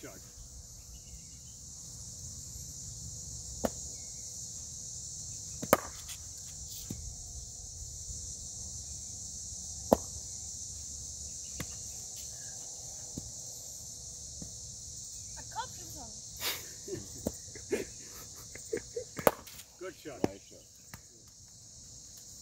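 A cricket bat striking the ball a few times, single sharp cracks several seconds apart, over a steady high insect chorus.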